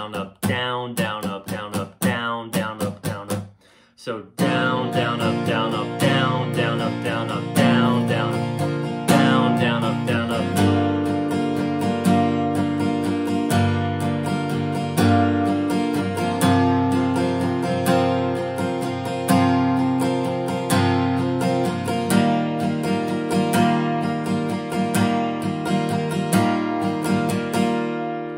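Steel-string acoustic guitar, capoed at the third fret, strummed in a down, down, up, down pattern. The strums are short and separate at first, then there is a brief break about four seconds in, followed by steady, ringing chord strumming.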